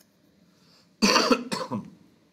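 A man coughing, a short burst of a few coughs about a second in.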